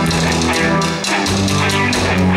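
Live rock band playing an instrumental passage: electric guitar, bass guitar and a drum kit with regular cymbal strikes, loud and full.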